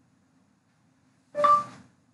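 A single short chime-like tone, struck sharply and dying away within about half a second, heard once about a second and a half in.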